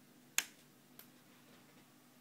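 A sharp click about half a second in, then a fainter click about half a second later, over a faint steady hum.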